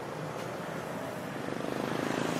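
A motorcycle engine idling steadily, getting a little louder near the end.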